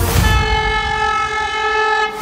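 High-speed train horn sounding one long, steady note that cuts off abruptly, opening with a brief rush of noise.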